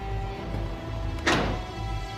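Dramatic background score with steady held notes and bass. About a second and a quarter in, a single short, sudden hit or whoosh sound effect is the loudest sound.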